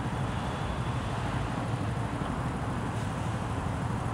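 Steady city street background noise: a constant low rumble of traffic with no single event standing out.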